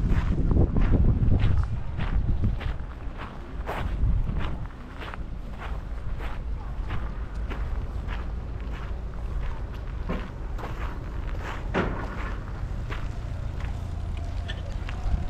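Footsteps crunching on loose gravel, a steady walking pace of about two steps a second. A low rumble sits under the first couple of seconds.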